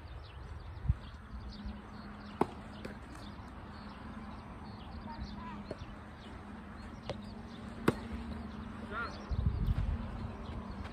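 Sharp pops of soft tennis racket strings hitting the rubber ball, two clear strikes, about two and a half seconds in and a louder one near eight seconds, with a few fainter taps between. Small birds chirp faintly over a steady low hum, and wind rumbles on the microphone near the end.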